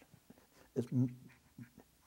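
Only a man's hesitant speech: a quiet pause, then a couple of short halting words about a second in, with brief breathy bits after.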